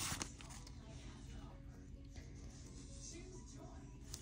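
A brief rustle of a paper sticker sheet being handled right at the start, then faint music and talk in the background.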